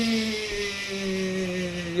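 A man's voice imitating a juicer machine running: one long hum with a hiss over it, sliding slightly lower in pitch.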